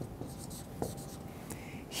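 Marker drawing on a whiteboard: a few faint, short strokes with light ticks.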